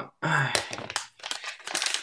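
Clear plastic packaging crinkling and crackling in the hands as a phone bumper case is unwrapped, with a brief sigh near the start.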